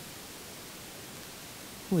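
Steady, even hiss of room tone with nothing else happening, then a short spoken "oui" at the very end.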